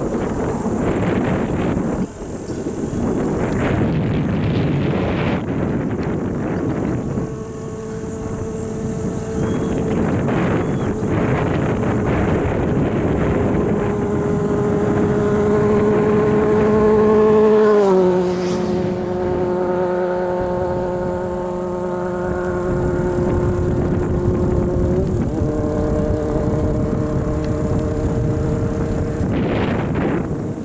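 Road and wind noise from a moving vehicle, with a steady engine hum that comes in about seven seconds in. The hum drops in pitch a little past halfway and rises again near the end.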